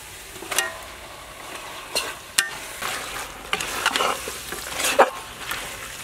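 Meat being stirred in a hot metal pot with a metal ladle: irregular scrapes and sharp clinks of the ladle against the pot, about one a second, over a steady frying sizzle.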